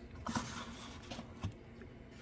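A few soft knocks and clicks as small Christmas village houses are handled and set down on a tabletop.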